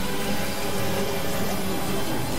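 Dense, steady synthesizer drone in an industrial noise style: a few held low tones under a thick wash of hiss, with no pauses or beat.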